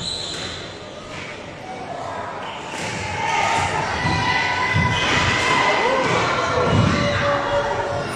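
Squash rally: the ball is struck by the rackets and thuds off the court walls, with a few sharp knocks early on and heavier thuds in the second half. Voices shout in the hall over the play, growing louder about three seconds in.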